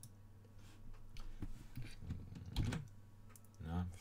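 Sparse clicking at a computer: a handful of short, light clicks spread over a few seconds, over a faint steady low hum.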